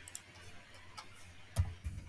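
A few sharp clicks and taps from a computer mouse and keyboard as the search box is clicked and a short word is typed. The loudest, with a low thud, comes about one and a half seconds in.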